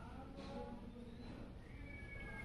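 Quiet eating sounds: chewing and fingers working rice on a steel plate, with a short click about half a second in. Under them is a faint, wavering pitched call.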